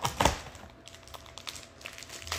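Clear plastic candy wrapper crinkling as it is torn and peeled off a gumdrop, with a sharp crackle of plastic right at the start and scattered faint rustles and ticks after.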